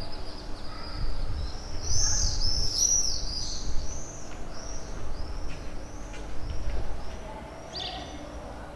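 Small birds chirping in a run of quick, high, arching calls, busiest about two to three seconds in, over a low background rumble.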